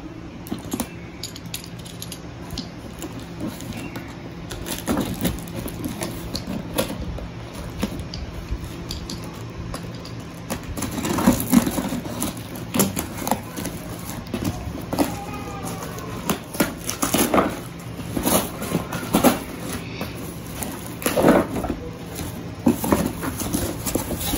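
A cardboard shipping box being opened by hand: packing tape peeled and torn off, and the cardboard flaps crinkling and scraping in irregular bursts that grow busier and louder about halfway through. A steady low hum runs underneath.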